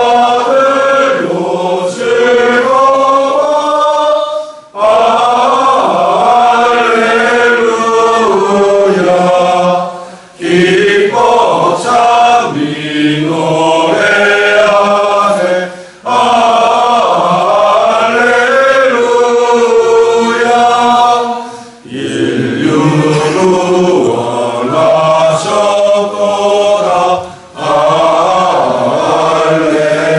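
A congregation singing a hymn together in unison, in phrases of about five to six seconds with a short breath pause between each.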